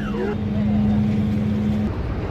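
A steady, even engine hum with a low rumble beneath it, cutting off abruptly just before the end.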